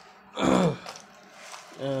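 A man clears his throat with one short, loud cough about half a second in; speech starts near the end.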